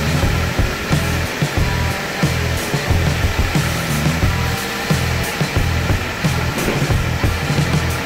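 High-pressure car-wash wand spraying water onto a car's bodywork, a steady loud hiss.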